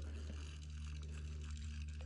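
Spinning fishing reel being cranked faintly as the line is wound in against a snag, over a steady low hum.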